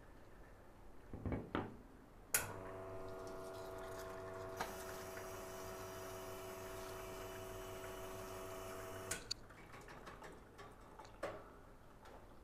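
Nuova Simonelli Appia Life espresso machine flushing water through its group head during a cleaning rinse: a click a couple of seconds in, then a steady pump hum with water running for about seven seconds, ending with another click. A few light knocks before and after.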